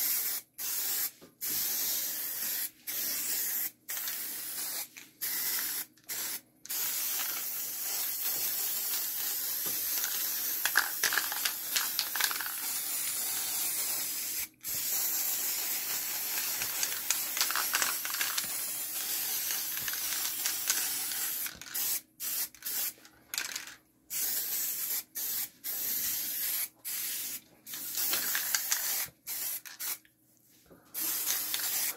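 Aerosol spray-paint can hissing as black paint is sprayed: a run of short bursts, then a long steady spray broken once midway, then short bursts again near the end.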